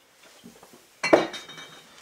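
A sharp clink of bar glassware or metal bar tools striking together about a second in, with a brief ring after it and a few softer knocks before.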